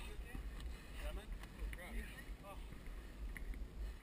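Low, steady rumble of wind on a head-mounted GoPro Hero 2's microphone, with faint voices of players in the background.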